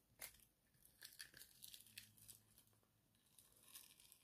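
Silicone mould being peeled away from a resin casting: faint crackling and tearing as the silicone separates, with a sharper crack about a quarter second in and clusters of small crackles after.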